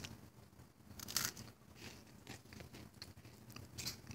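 Faint crunching of a cracker, a few scattered crisp crackles with the clearest about a second in.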